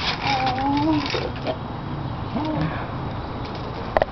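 A young child's high-pitched voice in short, bending vocal sounds during the first second and a half, and once more briefly about halfway through.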